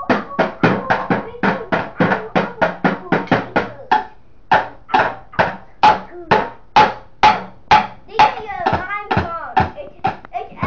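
A drum beaten by hand in a steady beat, about four strikes a second, slowing to about two a second around four seconds in. A child's voice joins near the end.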